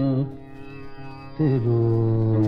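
Male Hindustani classical vocalist holding a long note in slow alaap. It breaks off about a quarter second in for a breath while a faint drone carries on, then a new long note enters with a wavering slide just before the end.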